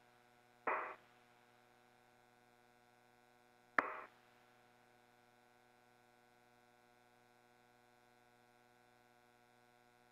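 Faint steady hum on an open spacecraft radio link, with two short bursts of radio noise about a second and about four seconds in, the second starting with a click.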